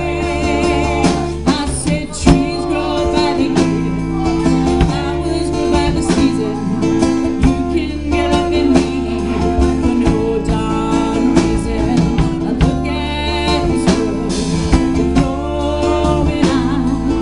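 Live rock band playing a song: strummed acoustic-electric guitar, drum kit and bass guitar, with a lead vocal sung in phrases over it.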